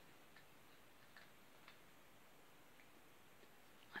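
Near silence with a few faint, irregular crunches: a puppy chewing on a dog biscuit.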